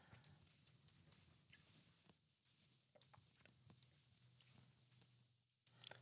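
Marker pen squeaking on a glass lightboard while writing: many short, high squeaks at irregular intervals.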